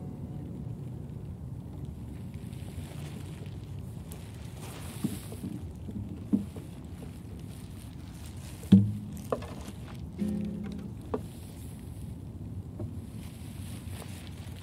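Quiet outdoor ambience with a steady low rumble, broken by a handful of short knocks and thumps. The loudest thump comes about nine seconds in.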